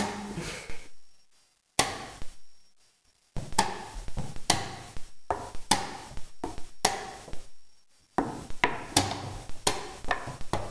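Chess pieces being set down hard on the board and the buttons of a chess clock being pressed in quick blitz play: a run of sharp knocks and clacks, several a second at times, with a few short pauses.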